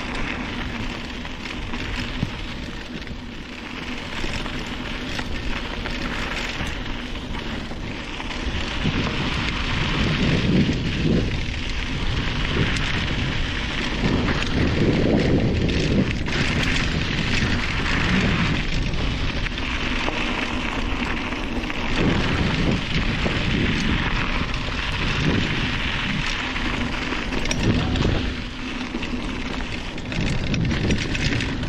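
Mountain bike riding along a dirt trail: continuous noise of the tyres rolling over the dirt, with wind rumbling on the microphone in gusts that swell several times.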